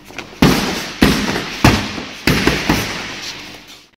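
Boxing gloves smacking into leather focus mitts in a quick run of sharp punches, about one every half second, each hit leaving a short echo. The hits thin out and stop shortly before the end.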